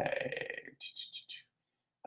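A man's brief, low vocal sound that trails off, followed by a few faint soft clicks and then a drop to silence.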